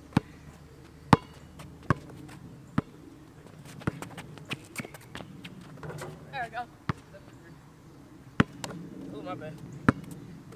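Basketball bouncing on an asphalt court: sharp single bounces at uneven spacing, roughly one a second, with a quicker cluster around the middle.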